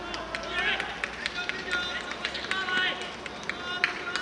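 Players shouting and calling to each other across an outdoor football pitch, with scattered knocks of footsteps or the ball and one sharp knock near the end.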